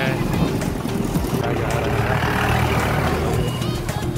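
Motorcycle engine running steadily as it rides along, with a low hum and road noise; a rushing noise swells and fades in the middle.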